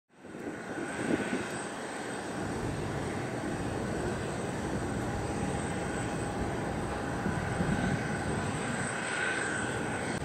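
Jet engines of a Boeing 747-400 at takeoff thrust on its takeoff roll: a steady, distant roar with a high whine. It fades in at the very start.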